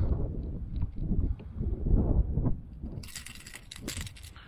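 Wind buffeting the camera microphone in uneven gusts, with a few sharp clicks and rattles near the end.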